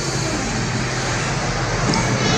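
Regency industrial wall fan running, a steady whoosh of moving air over a low motor hum.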